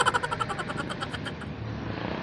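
Road traffic passing close by on a bridge: a vehicle goes past and fades over the first second and a half, leaving a steady traffic noise.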